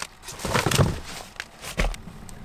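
Rustling and knocking of things being set down on a car seat, followed by a single short, heavy thud near the end.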